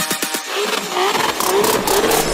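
Break in a bass-boosted trap remix: the fast bass hits stop and the low end drops out, leaving a car engine sound effect with a wavering pitch over a high hiss.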